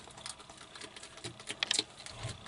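Bearded dragon chewing a superworm: a run of small, irregular crunching clicks that come thickest about a second and a half in.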